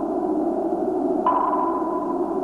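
Sonar pings over a steady low drone: a fresh ping sets in sharply about a second in, a single high ringing tone that lingers until the next one.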